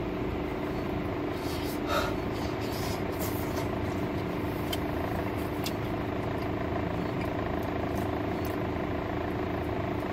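A car idling, heard from inside the cabin as a steady hum. A few faint clicks and smacks of someone chewing a bite of pizza come through, the clearest about two seconds in.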